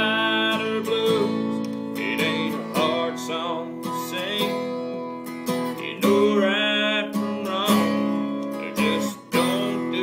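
A man singing a country song to his own strummed acoustic guitar, the chords ringing steadily under sung phrases that come and go.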